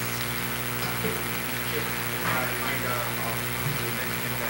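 Steady electrical hum on the sound system, with faint voices murmuring in the background.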